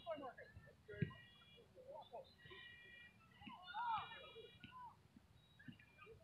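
Faint distant voices of players and spectators calling out across an open field, with a few soft low thumps, the clearest about a second in.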